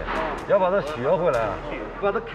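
A man speaking Chinese in an interview, with three short sharp clicks behind his voice.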